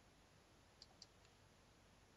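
Near silence with two faint, short clicks about a second in, a fraction of a second apart.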